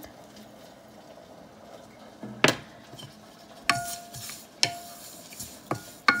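A wooden spatula stirs dry-roasting seeds and desiccated coconut in a pan. A single sharp knock comes about halfway through, then the spatula knocks against the pan several times, and the pan rings briefly after each knock.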